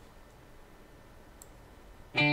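Faint room tone with a single short, sharp click about one and a half seconds in.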